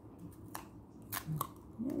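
A few short, sharp clicks and snips from hands handling a chewed charger cord and a roll of tape, with a voice starting near the end.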